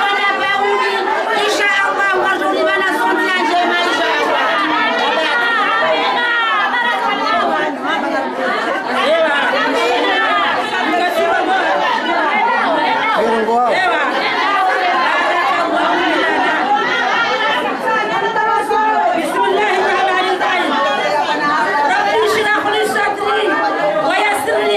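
Many women's voices overlapping in a crowded room, one of them amplified through a handheld microphone. The sound is loud and continuous, with no pauses.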